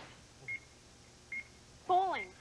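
Two short, high-pitched electronic beeps from the studio sound system, a little under a second apart, in a quiet stretch of studio room tone.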